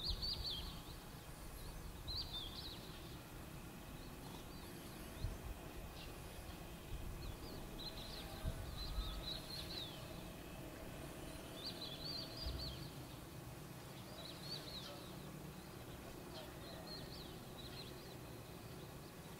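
A small bird singing short, high chirping phrases every couple of seconds over a low outdoor rumble, with a few faint dull thumps.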